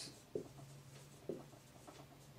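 Marker writing on a whiteboard: a few faint, short strokes.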